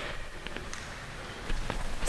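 Quiet sports-hall room tone with a few faint, short clicks spread through it, about halfway and again late.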